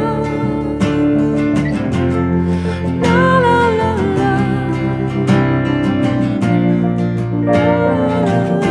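A small band playing a slow song live: plucked bass and guitar with keyboard, and a woman's voice singing a phrase about three seconds in and again near the end.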